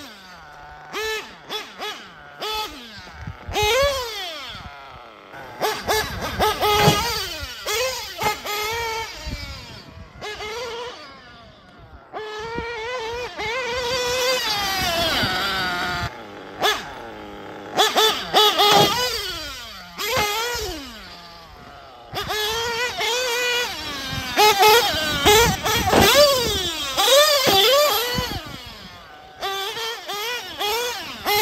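TLR 8ight XT nitro truggy's small glow engine revving hard in a high whine, the pitch sweeping up and down as the throttle is blipped, dropping away in short gaps between bursts. A few sharp knocks come through early on.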